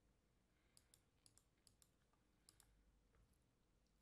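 Near silence with about four pairs of faint, sharp clicks from a computer's mouse buttons and keys, all within the first three seconds.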